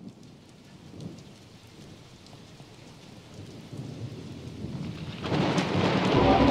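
Rain and rolling thunder fading in from silence at the start of a pop-rock album track and building steadily, with a sharp swell about five seconds in as the music begins to enter.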